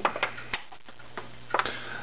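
Hands pressing and tucking raw bacon around a stuffed fish in a disposable aluminium foil pan: a few scattered clicks and crinkles from the handling and the flexing pan, over a steady low hum.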